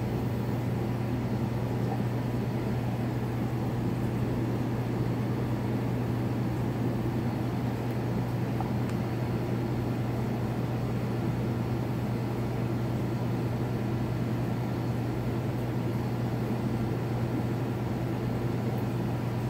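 Aquarium pump running with a steady low hum that does not change.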